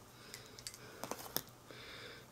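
A handful of faint light clicks from a packaged eyeliner pencil being handled, spread over the first second and a half.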